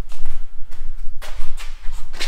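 Footsteps at a walking pace, about two a second, over a heavy low rumble of handling noise on a handheld camera's microphone as it is carried.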